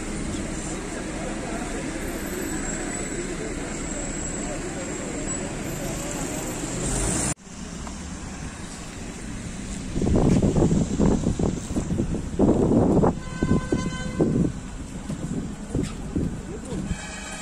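Steady outdoor street noise with a low murmur of voices. After an abrupt cut about seven seconds in, a car rolls slowly over cobblestones with loud, irregular rumbling, and a brief horn-like toot sounds near the end.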